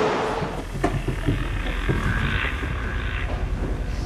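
A steady low indoor rumble with a few light knocks, about one and two seconds in.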